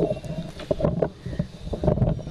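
Microphone handling noise: low rumbling with a run of irregular knocks.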